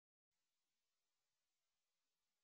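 Near silence: faint, even recording hiss.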